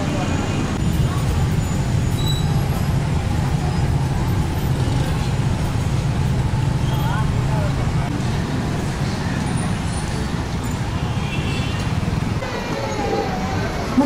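Steady city street traffic: a continuous low rumble of cars and motorcycles passing on the road, with faint scattered voices of passers-by.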